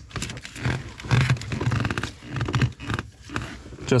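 Plastic multi-function switch connector and its wiring harness being worked and pushed into its seat on the steering column. It makes a run of irregular rustles and knocks.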